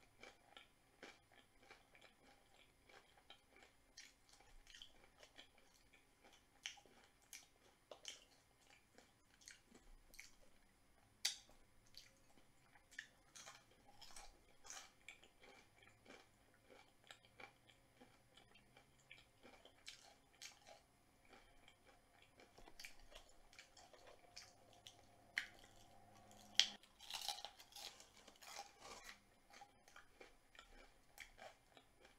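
Close-miked chewing of a person eating chicken wings and breaded onion rings: faint, irregular crunches and mouth clicks, with a few sharper crunches, the loudest near the end.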